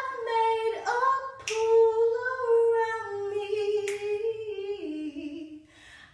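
A young woman singing unaccompanied, holding long sustained notes that step down lower near the end.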